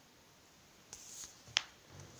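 A single sharp click about one and a half seconds in, over quiet room tone with a faint hiss just before it.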